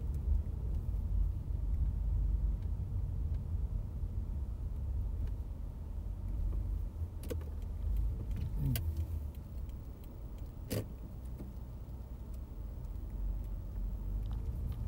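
Car driving slowly, heard from inside the cabin: a steady low road rumble, with a short rising whine about halfway through and three sharp clicks in the second half.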